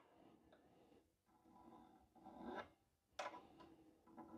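Faint, light strokes of a rounded fret-end dress file brushing across the ends of a guitar's frets to take off sharp barbs: a soft rasp about two seconds in and a short scrape a little after three seconds, otherwise near silence.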